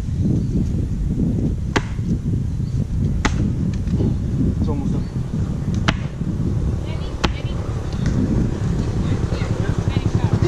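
A coconut being struck against a rock to crack it open: four sharp knocks, about one to two and a half seconds apart, over a steady low rumble.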